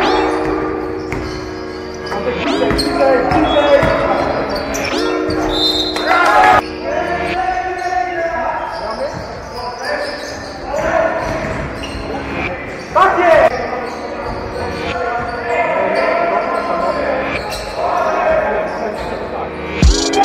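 Basketball game sounds in a large sports hall: the ball bouncing on the wooden court, with players' shouts, all echoing in the hall.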